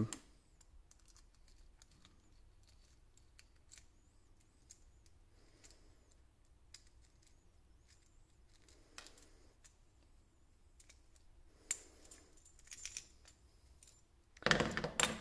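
Faint scattered clicks and small scrapes of a screwdriver turning screws out of a plastic terminal block, with a sharper click about twelve seconds in.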